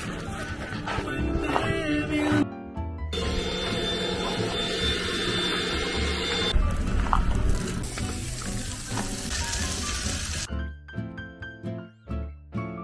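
Background music, with a steady hissing noise running under it through the middle and clear, plain notes near the end.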